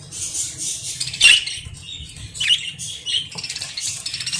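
Budgerigars chirping and chattering in short high-pitched calls, the loudest about a second in, with a quick run of soft ticks near the end.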